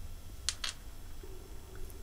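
Steel tweezers clicking lightly against a small metal thermal-fuse part, two quick clicks about half a second in and a fainter one near the end, over low steady room hum; a faint steady tone comes in about halfway through.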